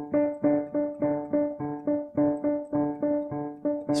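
Yamaha digital piano playing the same few notes over and over with both index fingers, at an even pace of about three notes a second: a ragtime rhythm exercise played straight, not swung.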